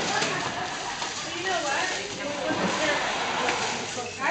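Cellophane crinkling and rustling as it is handled over foil turkey pans, under the chatter of several people talking in the room.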